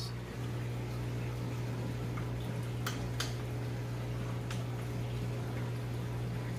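Aquarium equipment running with a steady low hum and water bubbling in the tank, with a few light clicks a little after the middle.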